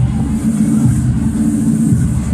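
Loud music over a stadium public-address system, dominated by a heavy bass beat.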